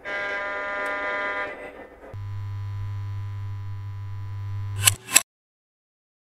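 Two steady train-horn blasts: the first higher and about a second and a half long, the second lower with a deep tone and nearly three seconds long, followed by two sharp clacks.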